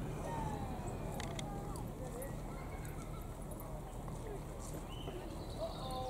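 Outdoor ambience: faint distant voices and calls over a steady low rumble.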